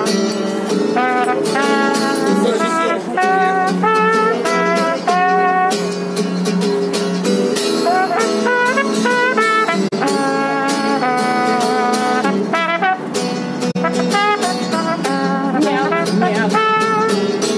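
Trombone playing a jazzy melody in short phrases of held and sliding notes, over a strummed acoustic guitar.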